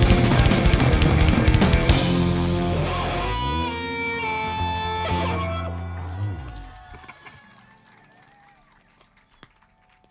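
A live rock band with electric guitar and drum kit playing hard, then stopping about two seconds in on a final chord that rings on and dies away over the next few seconds, leaving near quiet for the last few seconds.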